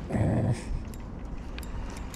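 A short, rough, voice-like sound lasting about half a second at the start, followed by a few faint clicks.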